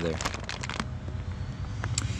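Low, even background noise with a few light clicks and rustles just after the start and a single small click near the end.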